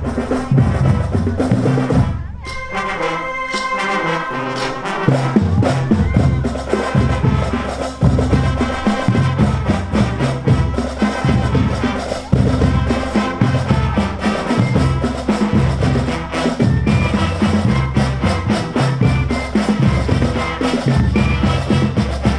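Marching band playing: brass and woodwinds over a steady beat. About two seconds in the beat stops for a held chord, then resumes about five seconds in.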